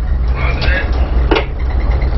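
Tugboat's twin diesel engines running astern as a steady low drone, heard from the wheelhouse. A faint voice comes in about half a second in, and there is one sharp click a little past the middle.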